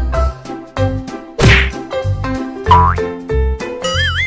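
Upbeat children's background music with a steady bass beat and bouncy melody. A loud whack sound effect lands about a second and a half in, and a quick rising whistle follows near the three-second mark.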